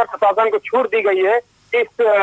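Only speech: a reporter talking in Hindi over a telephone line, which sounds narrow and thin.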